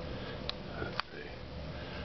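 Low room noise with two faint clicks about half a second apart, from a handheld camera being moved as it pans.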